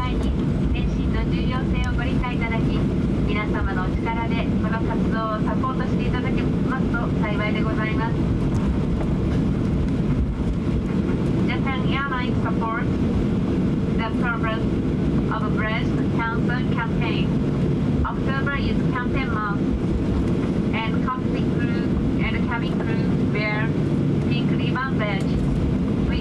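Steady low cabin drone of a Boeing 737-800 taxiing, its CFM56 engines running, heard from inside the cabin. A voice keeps talking over it throughout.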